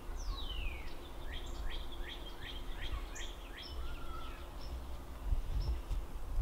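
A bird singing: a long falling whistle, then a run of about six short downward-slurred notes, roughly three a second, over a low steady background rumble.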